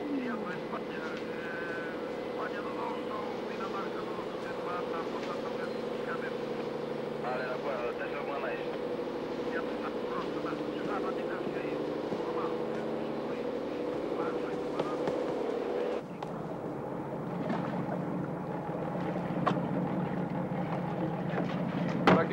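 Boat engine running with a steady drone. About sixteen seconds in it gives way to a different, lower hum.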